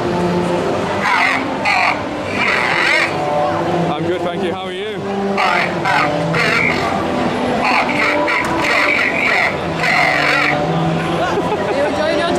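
Crowd chatter in a busy exhibition hall, with music playing underneath.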